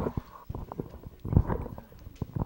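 Handling noise of a handheld microphone being passed from hand to hand: a string of irregular low knocks and rubbing thumps, the loudest about one and a half seconds in.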